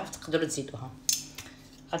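Two light, sharp clinks about a second apart: a glass spice jar being picked up off a granite kitchen counter and handled.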